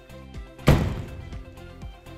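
Leer Latitude soft folding tonneau cover's rear section shutting onto the truck bed: a single loud thunk a little under a second in as it closes and latches, now that its clamps have been adjusted. Background music plays throughout.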